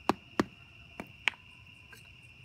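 A hammer tapping the end of a wooden rod four times, in two quick pairs, ramming bentonite clay (crushed kitty litter) down into a rocket-motor tube to compact it. Crickets chirp steadily behind.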